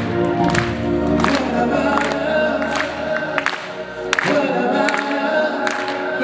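Live band playing a song with several voices singing together, drum and cymbal strikes marking the beat; the deep bass drops out about halfway through.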